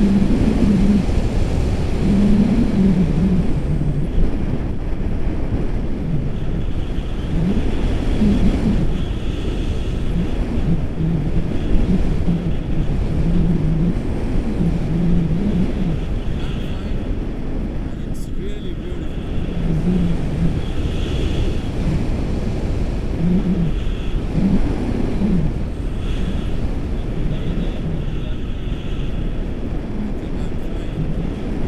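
Airflow from a paraglider's forward flight buffeting the camera microphone, a loud steady low rush. Muffled voices talk on and off through it.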